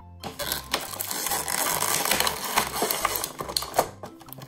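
Clear plastic blister tray crackling and clicking as small toy pieces are pried out of it by hand, with a sharp click near the end. Background music plays underneath.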